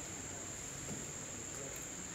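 Pause with low room noise and a faint, steady high-pitched whine that holds one pitch throughout.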